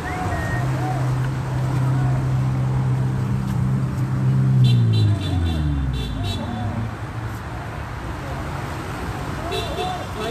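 A vehicle driving past on the street: a steady engine hum that drops in pitch about five seconds in as it goes by, over constant traffic noise.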